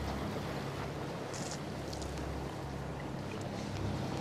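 Fishing boat's engine running steadily with a low hum, under a haze of wind and sea noise.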